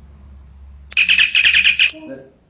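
A loud, rapid high-pitched chirping trill of about ten chirps on one steady pitch, starting about a second in and lasting about a second.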